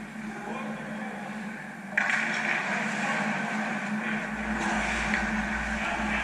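Ice rink game sound: a steady hum with distant players' voices and skating noise off the ice, getting louder about two seconds in.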